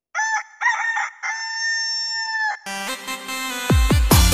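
A rooster crowing: two short calls and then one long held call. About two and a half seconds in, an electronic dance track starts, with a steady kick-drum beat coming in near the end.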